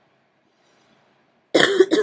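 Near silence, then a person's short cough about one and a half seconds in.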